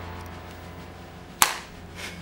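A single sharp click about one and a half seconds in, from a handheld phone being handled as the call is ended, over a faint low hum.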